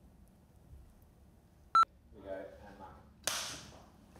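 A single short, sharp electronic beep in a quiet room. It is followed by a brief murmur of a voice and then a short breathy hiss.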